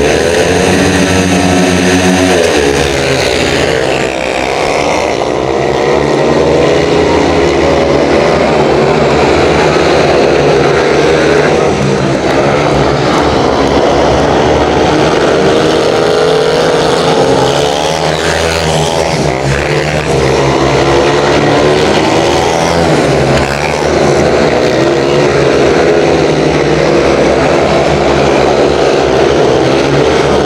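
Several speedway motorcycles, each with a 500cc single-cylinder methanol engine, racing round a shale track. Their engines rise and fall in pitch as the riders accelerate and ease off through the bends.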